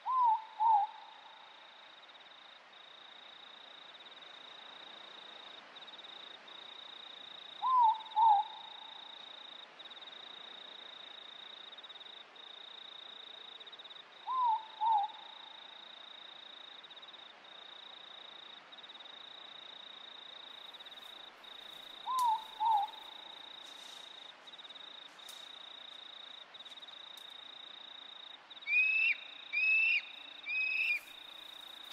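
A night bird calls a pair of short falling notes, four times, about every seven to eight seconds, over a steady high-pitched insect trill that breaks briefly every second or so. Near the end, a higher call repeats three times in quick succession.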